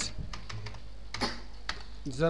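Computer keyboard being typed on: about six separate keystroke clicks, irregularly spaced, as digits are entered, over a steady low hum.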